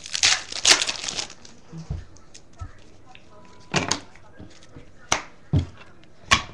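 A baseball card pack's wrapper being torn open and crinkled in the hands for about the first second, then a few short rustles and taps of cards being handled.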